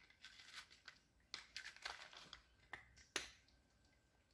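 A Russian blue cat eating dry kibble from a plastic bowl: faint, irregular crunches and clicks as it chews and noses the pieces, the sharpest a little after three seconds in.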